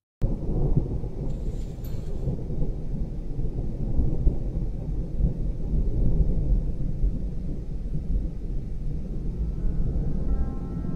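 Thunderstorm sound effect: a deep, steady rumble of thunder with rain that starts suddenly, with soft music tones coming in near the end.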